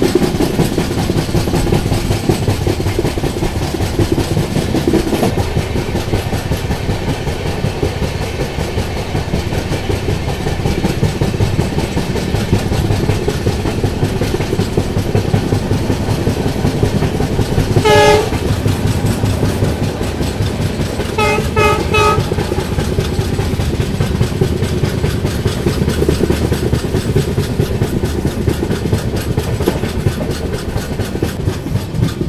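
Passenger train running along the track, heard from the coach door: a steady rumble with the wheels clattering over the rails. Past the middle a locomotive horn gives one short blast, then three quick toots a few seconds later.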